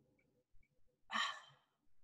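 A single short, breathy sigh about a second in; otherwise quiet.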